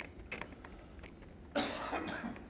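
A single cough about one and a half seconds in, sudden and short, over the near-quiet of the hall.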